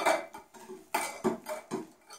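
Wire whisk clinking against a glass mixing bowl as eggs and sugar are beaten, in a few separate knocks.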